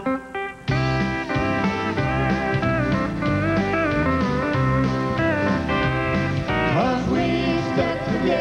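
Country band starting the instrumental intro of a song about a second in, led by pedal steel guitar, with a sliding steel phrase near the end.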